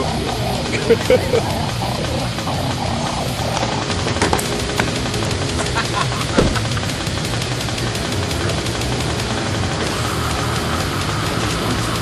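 Music playing over a steady rumbling drone of vehicle noise, with a few short bits of voices.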